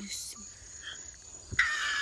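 Insects, crickets by the look of it, making a steady high-pitched drone. About a second and a half in comes a knock, then a louder hissing rush with a falling whine.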